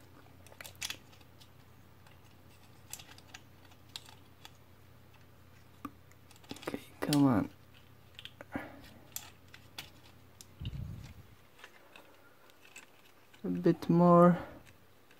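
Scattered small plastic clicks and taps as parts of a plastic action figure are worked loose by hand, with a short hum from the person about seven seconds in and a low dull bump near eleven seconds.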